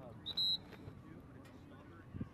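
One short, high-pitched whistle blast, about a quarter of a second in, over faint distant voices; most likely a referee's whistle.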